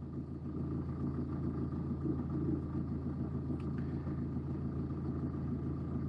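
A steady low background rumble with a faint constant hum in it, unchanging throughout, with no distinct events.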